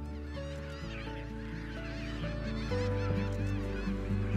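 Many birds calling at once in a seabird nesting colony: a dense chorus of short, overlapping calls that rise and fall in pitch. Background music of held chords runs underneath, changing chord about a second in and again near three seconds.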